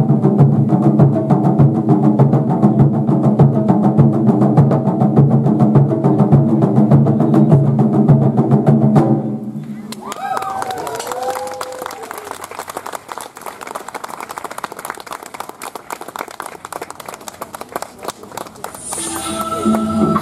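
Taiko drums beaten fast and hard by several drummers in a dense, driving rhythm that stops suddenly about nine seconds in. Then quieter clapping with a few shouts.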